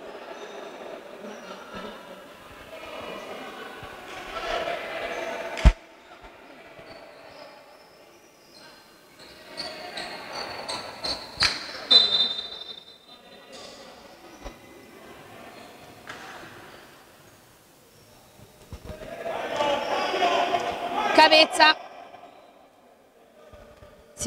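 Players' and referees' voices echoing in a sports hall during a stoppage in play, with a few sharp bounces of a basketball on the wooden floor; the loudest is about six seconds in.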